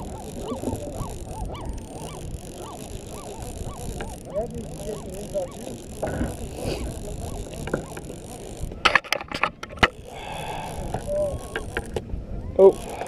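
A flock of seabirds calling, many short honking calls overlapping without a break. A few sharp clicks about nine seconds in.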